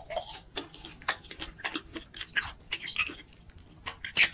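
Close-up chewing and mouth sounds of a person eating: a quick, irregular run of small clicks and smacks that eases off near the end.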